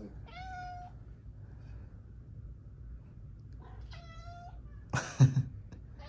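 Domestic cat meowing twice, two short calls of steady pitch, the first just after the start and the second about four seconds in. A brief loud thump follows about five seconds in.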